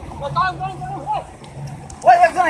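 Raised voices calling out over the water during the first second, over a low steady hum and faint water noise.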